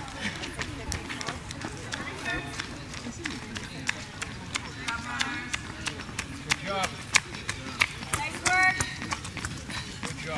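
Running footsteps on an asphalt road: a string of sharp footfalls from runners passing close by, loudest about seven seconds in, with brief shouts from onlookers now and then.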